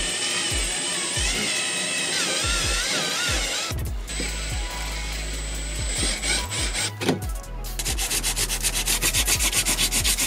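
A power drill boring out an aluminium standoff in a cast aluminium housing: a steady high whine, broken briefly about four seconds in. From about seven and a half seconds, sandpaper rubbing quickly back and forth on the aluminium, about four strokes a second, to smooth the drilled-down stub.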